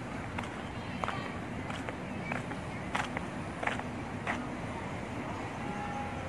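Footsteps of someone walking at an easy pace, soft ticks about every two thirds of a second, over steady outdoor background noise with faint distant voices. The steps fade out about four and a half seconds in.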